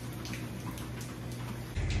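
Motorized treadmill running with a steady low hum, with a dog's light paw steps tapping on the moving belt. The sound changes abruptly near the end.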